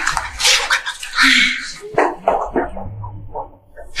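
A man crying out in short yelps, mixed with noisy rustling bursts in the first two seconds, trailing off later.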